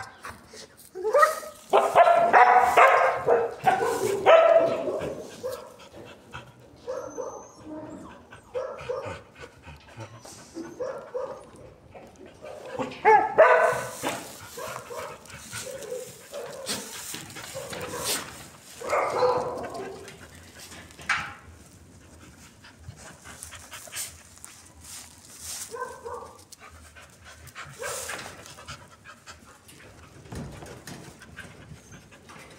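A dog vocalising in bouts, with barks and pitched cries, loudest over the first few seconds, and quieter panting between.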